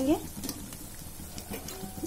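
Mawa dough pieces deep-frying in hot oil in a kadhai, the oil sizzling steadily, with a few light clicks of a wire skimmer scooping in the pan.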